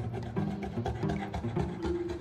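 Background music: a melody of short held notes changing every fraction of a second, with a light percussive tick.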